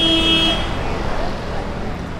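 Busy city street: steady traffic rumble, with a short vehicle horn toot lasting about half a second at the start.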